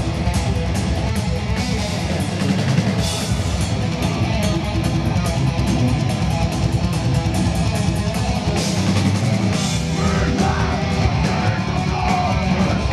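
A metalcore band playing live at full volume: heavy distorted electric guitars over fast, dense drumming, recorded from the audience.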